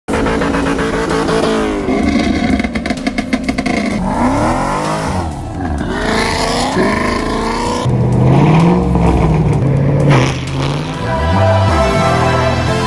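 V8 muscle-car engines revving hard during burnouts, their pitch rising and falling, with tyre squeal. About two and a half seconds in there is a rapid stutter in the engine note lasting roughly a second.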